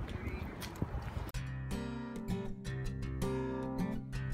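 Street noise for about a second, then background guitar music cuts in suddenly, with a steady rhythm of plucked notes.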